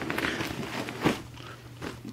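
Faint handling noise from the nylon ALICE pack on its metal frame: light rustling and small scattered clicks, one slightly louder about a second in.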